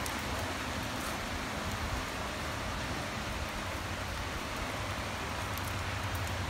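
Steady, even hiss of background noise with a low hum underneath, unchanging throughout, with no distinct events.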